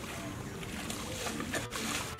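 Wet mud and water sloshing and splashing as men scoop through a muddy pond with metal pans, a steady watery churn with a couple of sharper splashes near the end.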